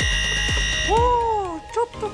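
Electronic buzzer tone held for about a second as the on-screen countdown timer hits zero, marking the end of a timed drill, over background music with a beat. Right after it comes a short gliding sound that rises and then falls in pitch.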